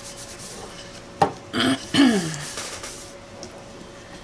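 A paper towel rubbing and wiping wet paint off a table surface, with a sharp tap about a second in. A short vocal sound comes around halfway.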